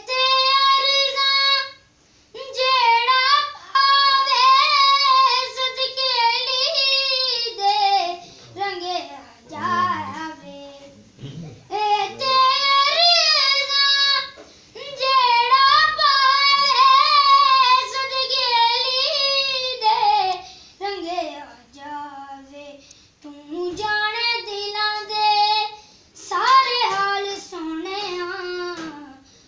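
A boy singing solo without accompaniment: long phrases of held, wavering notes, broken by short pauses for breath.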